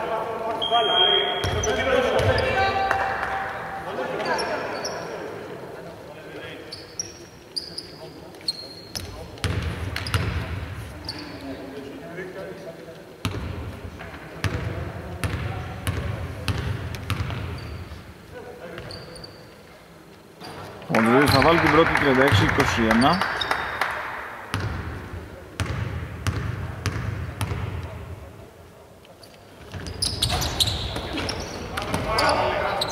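A basketball bouncing and being dribbled on a wooden court, with repeated sharp bounces through the whole stretch, among players' voices in a large arena.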